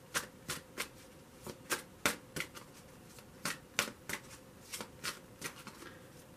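A tarot deck being shuffled hand over hand. Packets of cards slap together in a string of crisp taps, about two to three a second.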